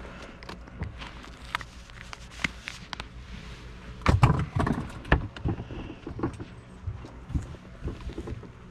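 Scattered clicks and knocks of fishing tackle being handled in a boat while a crappie jig is rigged and cast, with a cluster of louder thumps about four seconds in.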